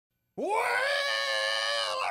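A man's voice drawing out "well" as one long sung note, scooping up in pitch about a third of a second in and then held steady.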